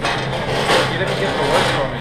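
Cardboard pizza box being opened, its lid lifted, over people talking and a steady low hum.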